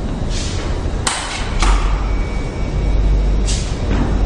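Heavy metal morgue cooler door being unlatched and opened: a sharp clunk about a second in and several short hissing swishes, over a steady low hum that swells partway through.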